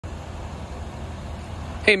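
Steady outdoor background noise with a low, uneven rumble, cut off near the end by a man saying "Hey".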